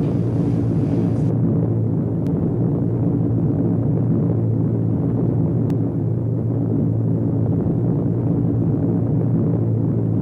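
Steady low drone of piston aircraft engines, heard from bombers flying in formation.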